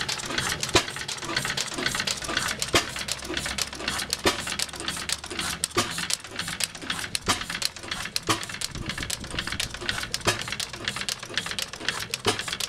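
1911 Tangye AA 'Benzoline' single-cylinder stationary petrol engine running on its original magneto ignition: a steady mechanical clatter of quick ticks, with a sharper knock every second and a half or so.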